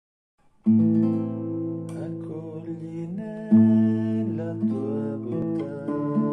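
Nylon-string classical guitar playing slow chords. It enters with a full chord about half a second in, plays lighter picked notes, and strikes a second full chord about three and a half seconds in.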